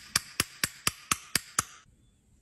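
A metal makeup pan tapped repeatedly against the rim of a glass dish, seven sharp taps about a quarter second apart, knocking broken pressed foundation out of the pan. The tapping stops shortly before the end.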